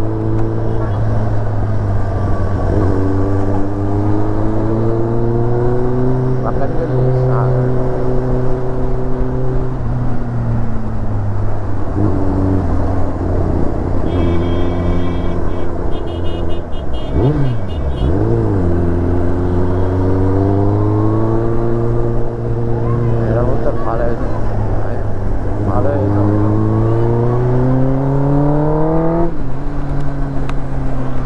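Kawasaki ZX-10R's inline-four engine under way at low speed in traffic, its pitch climbing as it pulls and dropping at each gear change, several times over.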